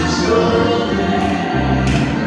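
Gospel song sung by two women over sustained low instrumental accompaniment, with a bright crash near the end.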